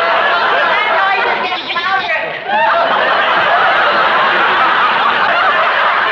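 Studio audience laughing, a sustained laugh of many overlapping voices that dips briefly about two seconds in and then swells again.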